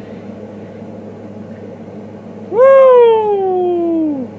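A man's drawn-out vocal exclamation, a long 'yooo'-like cry, starting about two and a half seconds in. Its pitch rises quickly and then slides slowly down, over a low steady background hum.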